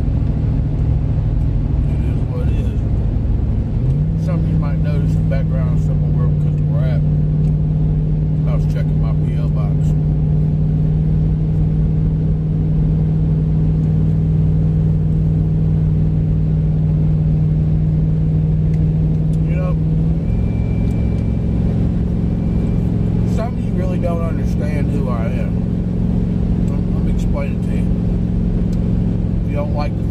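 Car engine and road noise heard from inside the cabin while driving: a steady low drone that steps up in pitch about four seconds in and shifts again about twenty seconds in.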